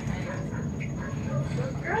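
Underwater treadmill running with a steady low hum, under faint voices.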